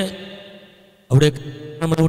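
A man's voice through a handheld microphone and PA loudspeaker. A syllable dies away at the start. After a pause of about a second, drawn-out syllables held at a level pitch come in, in a sing-song, chant-like delivery, and a faint steady hum stays underneath during the pause.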